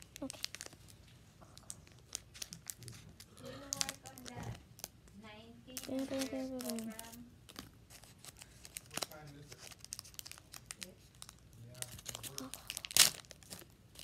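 Foil Pokémon booster pack wrapper crinkling and crackling as it is handled and torn open, with one sharp, loud crack near the end.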